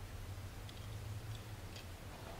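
A few faint, light clicks of a thin glass cover slip being picked up and handled, over a steady low hum.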